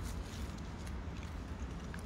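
Faint, steady low rumble with a few soft ticks: handling noise from a hand-held phone and a toy figure being moved among leaves and soil.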